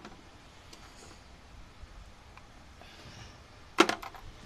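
Faint background hiss, then a single sudden sharp click, two or three strokes close together, near the end.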